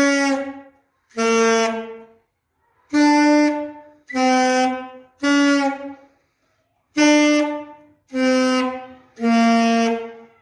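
A child beginner playing an alto saxophone: a slow practice exercise of eight separate notes, each held about a second with short breaks between, stepping up and down among a few close low pitches.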